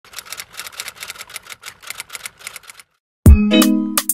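A fast run of light typing clicks, about seven a second, for nearly three seconds. After a brief gap, loud electronic intro music starts with a deep bass hit about three seconds in.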